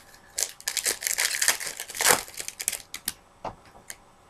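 Trading-card pack wrapper crinkling and crumpling in the hands: a dense run of crackles from about half a second in to nearly three seconds, loudest around two seconds, then a few isolated clicks.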